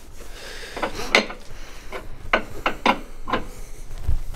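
About six sharp, irregularly spaced clicks and knocks from hand tools at work on the rear suspension under a Nissan S14.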